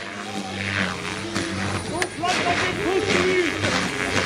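OMP M4 electric RC helicopter flying, its rotors giving a steady low hum, with voices over it.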